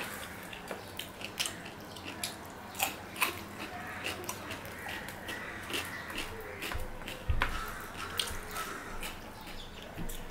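Close-miked eating sounds of a meal eaten by hand: many small wet clicks and squishes as fingers mix rice with fish curry on a steel plate, along with chewing. A louder low thump about seven seconds in.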